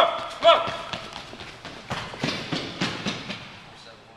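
Two short shouts near the start, then running footsteps of a sprinting ballplayer on an indoor track, a few sharp footfalls a second, growing fainter.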